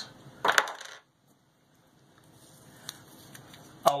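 A metal finger ring set down on a hard desk with one short clink about half a second in, then a soft click near three seconds.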